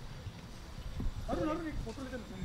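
A person's voice speaks briefly past the middle, over a steady low outdoor rumble.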